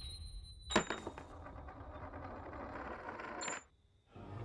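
A sharp crack about a second in as a revolver bullet hits a brittle counterfeit coin, followed by the fragments clinking and rattling across the table. Near the end a last click, then the sound cuts off suddenly.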